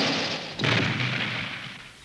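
Cartoon crash sound effect of a car smashing into a tree: a noisy crash, a second crash just over half a second in, then a fade.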